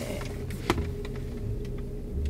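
Steady low rumble and hum of a car's cabin, with one sharp click a little under a second in.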